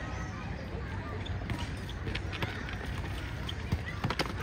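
Skatepark ambience: children's voices in the background over a steady low rumble, with a few sharp knocks and clacks of scooters and skateboards on concrete, the loudest near the end.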